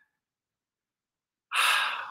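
Silence, then about one and a half seconds in a man's short audible breath, drawn just before he speaks.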